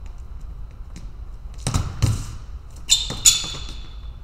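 Sneakers on a fencing strip during fast footwork: two heavy foot thuds a little under two seconds in, then two sharp shoe squeaks about a second later.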